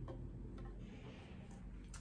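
Quiet handling of a small wooden tray with a cardboard back as it is turned over in the hands: a few faint clicks and a soft brief rustle about a second in, over a low room hum.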